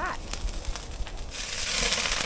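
Diced pork fat sizzling and crackling in a hot enamel cauldron, the sizzle growing louder near the end as more pieces are tipped in. This is the start of rendering lard and čvarci (pork cracklings).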